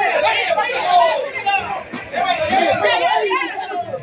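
Several people's voices talking over one another in dense, continuous chatter.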